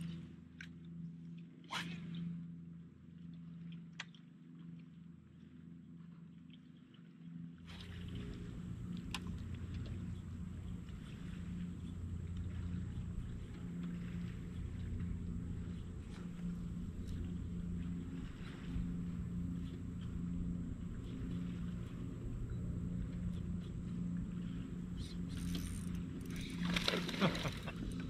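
Boat-mounted electric trolling motor humming steadily. About eight seconds in it comes up louder, with a rushing noise and a thin high whine. A brief louder burst of noise comes near the end.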